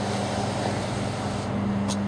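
Steady outdoor background rush with a constant low mechanical hum, and a brief click near the end.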